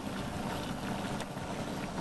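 Water at a full rolling boil in a stainless steel saucepan on an induction cooktop: a steady bubbling rush with a low hum beneath it.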